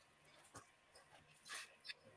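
Near silence on a video call whose guest's audio has dropped out, broken only by a few faint, short crackles.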